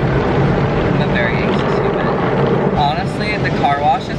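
Loud, steady drone of car wash vacuum motors running, with a voice over it from about three seconds in.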